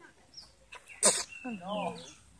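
A chicken clucking in the second half, just after a short, loud burst of noise about a second in.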